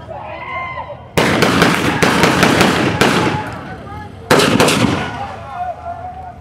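Gunshots fired into the air by police: three loud cracks about a second apart, then two more in quick succession, each with a long echoing tail.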